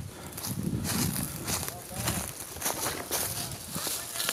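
Footsteps crunching through dry fallen leaves, a run of irregular steps.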